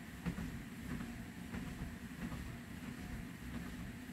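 LifeSpan TR1200 DT3-BT under-desk treadmill running quietly at 1.8 miles per hour, a low steady hum from the motor and belt. Footsteps on the walking belt come through as soft, faint knocks.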